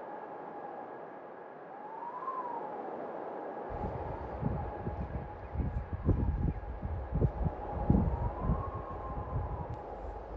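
A steady siren-like tone with two slow rising-and-falling swoops. From about four seconds in, wind buffets the microphone in irregular gusts, louder than the tone.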